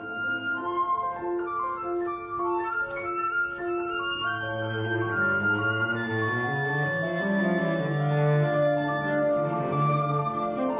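A Romantic-style chamber trio for flute, cello and piano playing: flowing piano figures under a flute melody, with the cello coming in on long low notes about halfway through.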